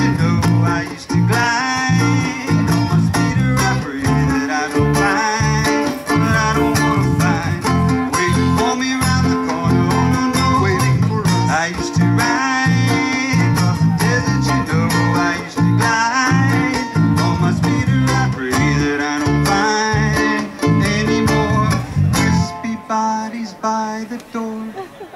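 Live acoustic string band of strummed and picked ukuleles and guitar playing an instrumental stretch over a steady bass beat. The song ends about a second and a half before the close.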